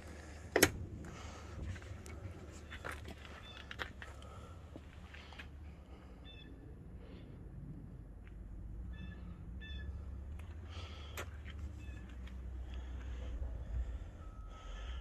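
A pickup truck door shuts with one sharp knock about half a second in. After it comes a steady low rumble, a few faint ticks, and short high calls in the middle.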